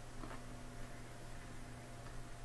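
Quiet room with a steady low hum, and a faint brief sound about a quarter second in.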